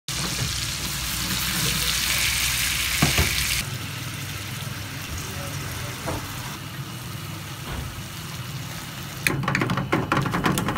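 Butter and green peppers sizzling in an aluminium frying pan: a loud hiss that drops abruptly to a quieter sizzle a few seconds in. Near the end a metal fork clatters and scrapes against the pan as the egg-and-tomato menemen is stirred.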